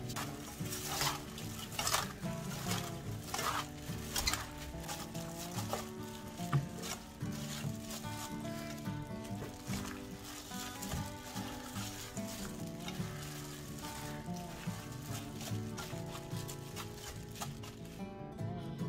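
Wet rustling and squishing of spring cabbage (bomdong) leaves being tossed and rubbed by a gloved hand with chili flakes and seasonings in a stainless steel bowl, the noises strongest in the first few seconds. Background music plays throughout.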